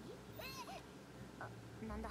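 Faint audio from the anime episode playing quietly: a couple of short high-pitched calls with bending pitch about half a second in, then a brief tone and the start of a character's spoken line near the end.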